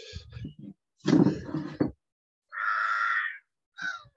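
A man laughing and making short wordless vocal sounds close to the microphone, the loudest burst about a second in.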